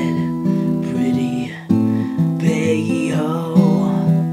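Acoustic guitar strummed as the accompaniment to a folk song, the chords ringing, with a short dip about a second and a half in before the next strum.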